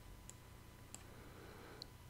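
Near silence: faint room tone with three brief, faint computer mouse clicks.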